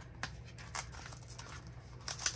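Faint rustling and a few light taps as hands handle a small cellophane-wrapped cardboard blind box, over a low steady room hum.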